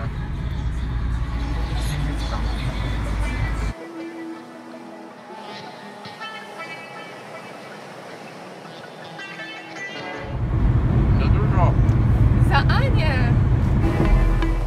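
Low, steady road and engine rumble inside a moving Opel car's cabin, with music over it. About four seconds in the rumble cuts out, leaving the music more quietly, and the rumble comes back loudly about ten seconds in.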